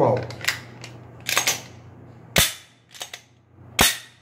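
A Glock pistol being handled: a series of sharp mechanical clicks and clacks from its parts being worked, the two loudest about two and a half seconds in and near the end.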